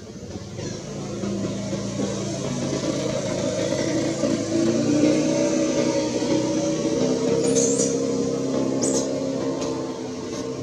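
A motor vehicle's engine passing close by: a low running sound that swells over several seconds and then fades. A couple of short high chirps come near the end.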